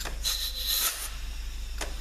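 Compressed air from an air nozzle hissing with a thin high whistle for about a second as it is fed into the B2 clutch passage of an 09G six-speed automatic transmission for an air check, with a sharp click at the start and another near the end. The clutch is holding pressure.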